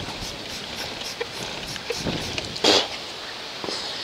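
Trigger spray bottle squirting Simple Green degreaser onto a dirt bike's drive chain: a short hiss of spray about two-thirds of the way in, over a steady background hiss.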